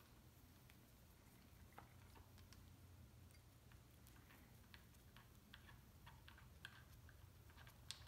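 Near silence with faint, irregular small clicks as a bicycle stem's top cap bolt is unscrewed with a 4 mm Allen key and turned out by hand.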